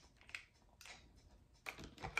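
A few faint, scattered plastic clicks and taps as a handheld plastic citrus squeezer and a plastic tub of mashed berry pulp are handled.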